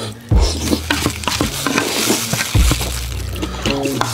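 Wet, sticky clicking and squelching of chopsticks stirring and lifting sauce-coated wide noodles in a metal bowl, over background music with a steady low bass line.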